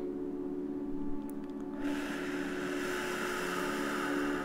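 Ambient meditation music of sustained, ringing drone tones. A soft airy hiss swells in about two seconds in and holds.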